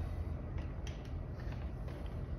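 Faint clicks of a polycarbonate motorcycle windscreen being slid up on its well-nut mounts, over a low steady hum.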